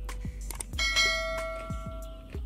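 A bright bell-chime sound effect for the on-screen subscribe-and-bell animation, struck once about three-quarters of a second in and ringing for about a second, over background music with a steady beat.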